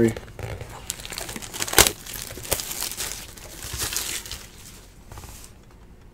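Plastic shrink wrap crinkling and tearing as it is pulled off a cardboard trading-card box, with a few sharp crackles in the first half and softer rustling toward the end.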